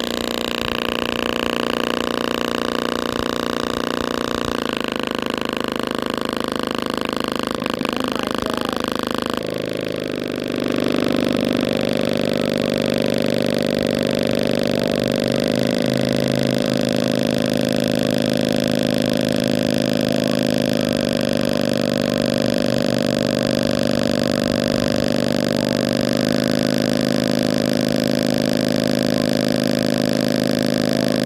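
JBL Flip 5 Bluetooth speaker playing a low bass tone loud, its ripped passive radiator pumping hard. The tone holds steady, changes about ten seconds in, and gets a little louder.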